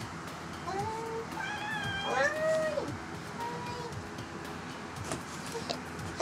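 A tabby cat meowing three or four times, the loudest a long arched meow about two seconds in, as it begs for food that is about to be served.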